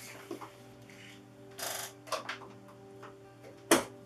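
Quiet background music with steady held notes, under handling noise from a sheet of test vinyl being fed into a Cricut Maker 3 cutting machine. There is a brief rustle about one and a half seconds in, and a single sharp tap near the end, the loudest sound.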